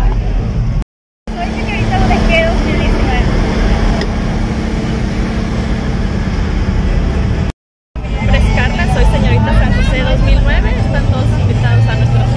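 Busy street sound: a vehicle engine running steadily under a mix of voices and chatter, with the sound cutting out abruptly for a moment twice.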